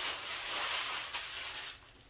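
Crinkly wrapping rustling as it is handled, a steady dry hiss with one sharp crackle about a second in, fading out near the end.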